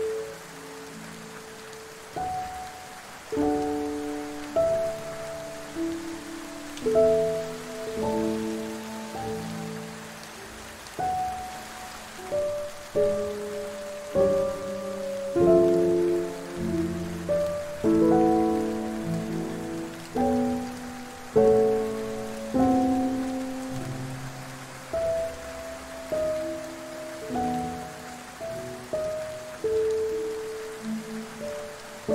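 Soft, slow piano music, single notes and chords that ring and fade, over a steady hiss of rain.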